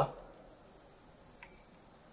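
A faint, steady high-pitched hiss or trill that starts about half a second in, right after a voice stops.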